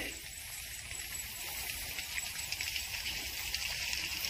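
Outdoor background ambience: a steady, even hiss with a low rumble underneath and no distinct events.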